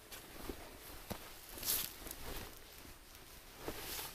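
Faint footsteps and rustling as a person moves about in dry oak brush wearing a camouflage poncho, a few scattered light steps with a brief louder rustle of fabric or brush a little under two seconds in.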